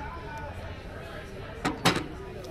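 Two quick knocks close to the microphone, the second louder, over the murmur of voices on a café patio.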